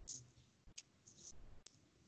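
Near silence with a few faint, short clicks.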